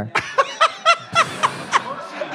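Laughter in short repeated chuckles, about four a second, dying away near the end.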